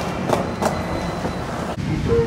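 Metro light-rail train running: a steady low rumble with two sharp clacks in the first second. The sound breaks off abruptly just before the end.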